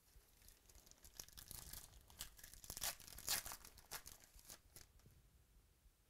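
Foil wrapper of a 2017-18 Select basketball card pack being torn open, a run of quiet crackling rips and crinkles that is loudest about three seconds in.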